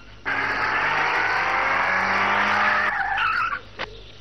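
A jeep's tyres skidding for about two and a half seconds, starting abruptly, as it brakes and pulls up; a short sharp click follows near the end.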